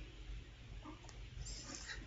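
Quiet room with faint small handling sounds of a cosmetics container being picked up, a light rustle near the end, and a soft murmur about a second in.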